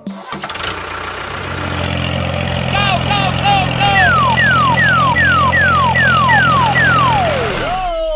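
A steady, engine-like hum, as of a tractor idling, growing louder over the first couple of seconds. About three seconds in come four short chirps that rise and fall, then seven quick falling whistles, the last one longer and sliding lower.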